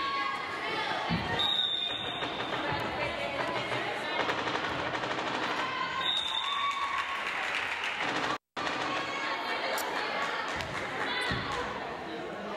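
Spectators' chatter echoing in a gymnasium during a volleyball match, with a few thuds of the ball being hit. The sound drops out completely for a moment about eight seconds in.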